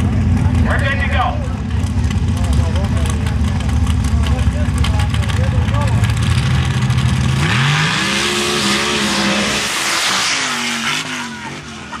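An open-class mud-racing vehicle's engine idles with a heavy rumble at the start line. About seven and a half seconds in, it revs sharply as the vehicle launches into the mud pit, with a loud rush of noise from the throttle and spray. Near the end the engine note drops in steps.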